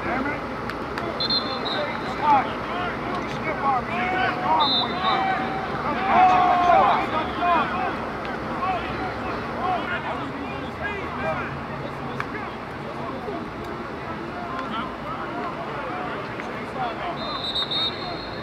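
Indistinct chatter and calls from a group of football players and coaches, several voices overlapping, with one louder shout about six seconds in.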